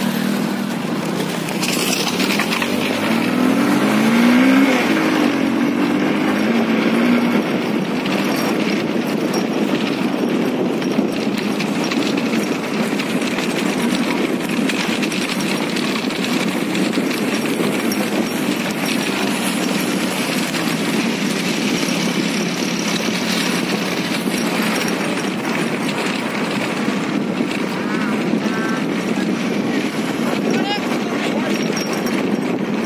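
Motorcycle engine running under way with heavy wind noise on the microphone; the engine revs up, rising in pitch, a few seconds in, then holds steady.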